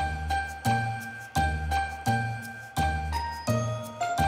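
Festive intro jingle: bright bell-like chimes held over a deep bass that pulses about every 0.7 seconds, the melody shifting up about three seconds in.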